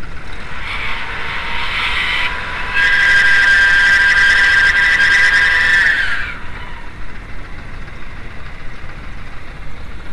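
Whine from a noisy timing belt tensioner on a running VW Mk2 1.8 L four-cylinder engine, heard over a steady hiss of noise dubbed onto the soundtrack. The whine comes in twice, louder the second time, then dips slightly and fades about six seconds in.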